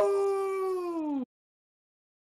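A man's long whooping "hoo!" of triumph on a voice-chat microphone. It is held on one pitch, sags at the end and cuts off suddenly about a second and a quarter in.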